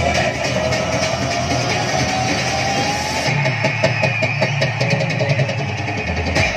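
Loud dance music played through stage loudspeakers. A slowly rising tone runs through the first three seconds, then a heavy bass and a steady beat come in about halfway through.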